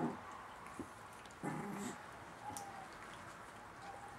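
Chihuahua puppies growling in play: a short low growl at the start and another about a second and a half in, with a faint thin squeak later on.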